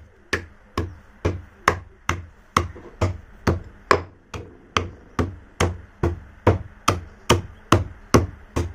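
A stone pestle pounding pieces of slate pencil in a stone mortar, crushing them to powder. The strikes come in a steady rhythm of about two a second, with a short break about four seconds in.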